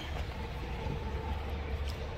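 A car engine idling: a steady low rumble with a faint even hum above it.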